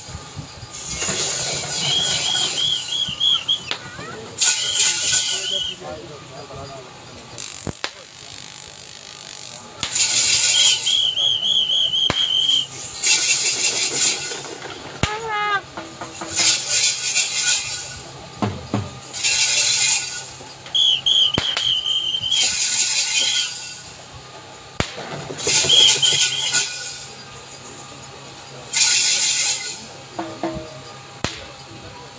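A trilling pea whistle blown in about five blasts of one to three seconds each, set among repeated loud bursts of shouting.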